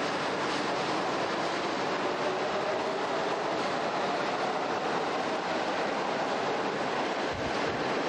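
Subway train running along a station platform: a steady rumble of wheels on rails and carriage noise.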